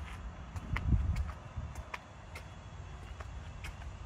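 Footsteps of a person walking on pavement, a scatter of light clicks and scuffs, with a low steady rumble underneath and a soft thump about a second in.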